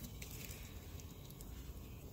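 Quiet low hum with a few faint ticks of gloved hands handling the wiring harness and its connector in the engine bay.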